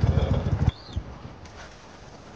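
A boat's tiller-steered outboard motor running and then cut off abruptly less than a second in, as the boat comes off the plane to fish.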